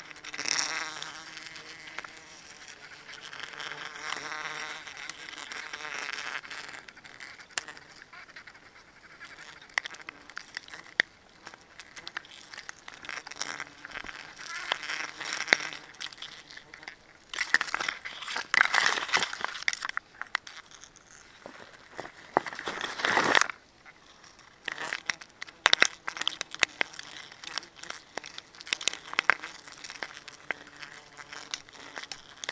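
Wild bees buzzing around a nest. There is loud rustling and scraping from a sack and gloved hands against the bark, heaviest in the middle of the stretch, with scattered clicks near the end.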